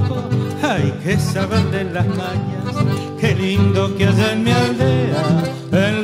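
Chamamé ensemble playing an instrumental passage of a chamarrita, with strummed and plucked guitars under a sustained melody line.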